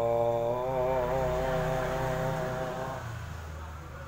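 A man singing unaccompanied, holding one long wavering note for about three seconds before it fades away.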